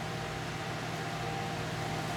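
Steady room background noise: a continuous low hum and even hiss with a faint, steady high whine, the sound of a running machine such as a fan or air conditioner.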